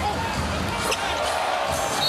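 Basketball being dribbled on a hardwood court, a few sharp knocks over steady arena crowd noise.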